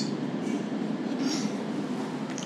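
Steady low background rumble without speech.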